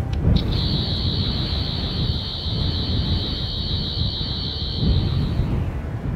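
Sci-fi sonic screwdriver sound effect scanning a substance: a steady high whine with a slight warble. It starts about half a second in and cuts off shortly before the end, over a continuous low rumble.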